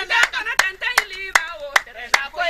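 Hand-clapping in a steady rhythm, about two and a half claps a second, with women's voices singing over the first part.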